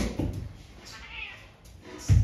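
A domestic cat meowing: one short call about a second in, with a knock at the very start.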